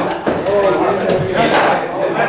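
A man talking, with one sharp crack about a second and a half in: a cricket bat striking the ball.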